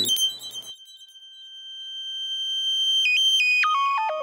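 Synthesized electronic tone, high and held steady while it swells in loudness. About three seconds in it breaks into a quick run of stepped beeps that fall in pitch.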